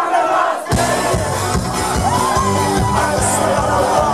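Gypsy-punk band playing live in a club, heard from the crowd, with the audience shouting and singing along. The drums and bass come in hard under a second in and drive on under the voices.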